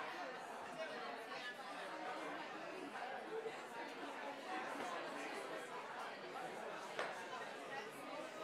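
Many people chatting at once in a large room, the voices blending into an indistinct hubbub, with a single sharp click near the end.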